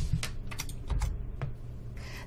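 About four irregular clicks of computer keys over a steady low hum.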